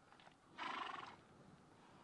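A horse giving a short whinny, about half a second in, lasting about half a second.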